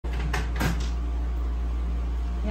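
Plastic front grille of a window air conditioner being set down on a nightstand: two short plastic clacks, about a third and two-thirds of a second in, over a steady low hum.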